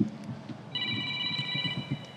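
An electronic tone of several steady high pitches sounding together, like a phone ringtone. It starts under a second in and holds for over a second, over a low background murmur.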